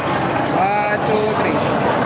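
Crowd talking over one another, with a few separate voices calling out briefly over a steady background din.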